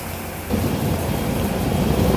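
Wind rumbling on the microphone together with rushing water from a boat under way at sea, a steady noise that grows louder about half a second in.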